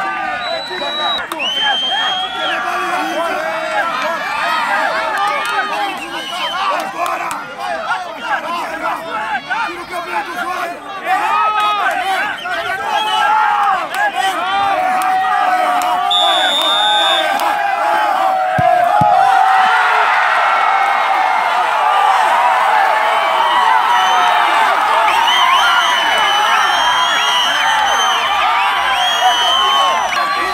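Crowd of football spectators talking and shouting in many overlapping voices, with a short referee's whistle blast about halfway through. From about two-thirds of the way in the crowd grows louder and denser, with shouts and cheers.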